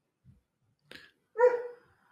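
A dog barks once, a short pitched bark about one and a half seconds in, just after a faint click.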